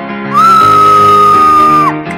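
A loud, high-pitched shriek held on one pitch for about a second and a half, rising in at the start and falling away at the end, over soft background guitar music.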